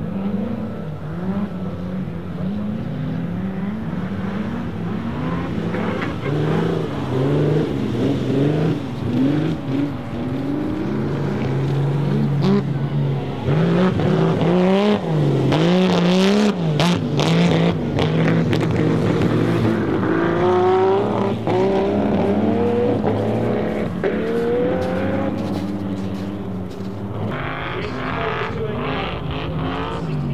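Classic racing cars' engines, among them the Ferrari 250 Testa Rossa's V12, revving up and down about once a second as the cars slide on ice under throttle. A cluster of sharp cracks comes about midway.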